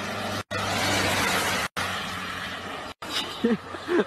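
A van sliding past on a snowy road: a rush of road and vehicle noise, loudest for about a second soon after the start. The sound cuts out briefly three times. Near the end come a few short voiced exclamations.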